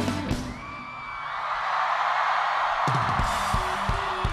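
A rock band's song ends about half a second in, and a large festival crowd cheers and yells. About three seconds in, the next song starts with a pulsing beat of about three strokes a second.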